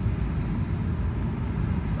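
Wind blowing on the microphone, a low, fluttering rumble.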